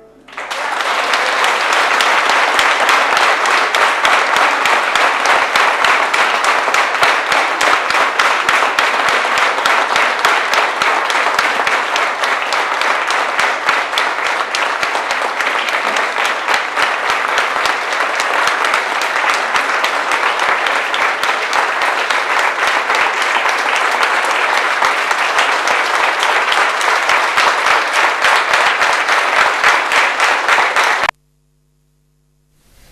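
Audience applauding: dense, steady clapping that sets in right after the music stops and keeps up without letting up.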